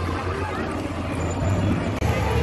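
Busy outdoor ambience: indistinct voices of passers-by over a steady low hum.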